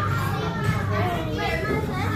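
Several children's voices chattering at once over a steady low hum.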